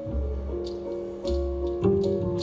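Live instrumental jazz, without singing: grand piano chords over low double bass notes about once a second, with light cymbal ticks.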